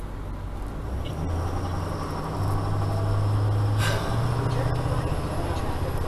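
Motorhome engine heard from inside the cab, droning low as the rig pulls away and gathers speed; its pitch steps up about a second in and again before halfway, then drops back briefly around four seconds, where a short burst of noise is heard.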